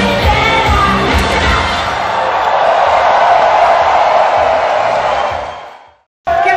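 A live pop song's thumping beat and singing end about two seconds in, and a concert crowd cheers and screams. The sound then fades out to silence near the end.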